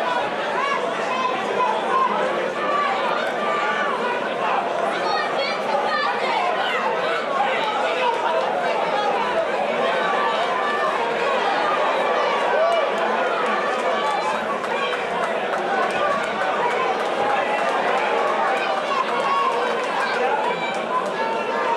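Boxing-match spectators, many voices talking and calling out over one another in a steady din.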